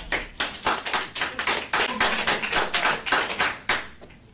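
Quick, irregular clapping, about five sharp claps a second and louder than the speech around it, stopping abruptly just before the end.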